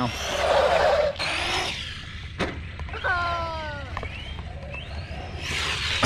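Battery-electric ARRMA RC truck driving on concrete: motor whine and tyre noise surging as it accelerates, loudest in the first second or two and again near the end, with a couple of sharp clicks.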